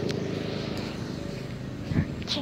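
A steady low engine drone that fades slightly, with a light click just after the start.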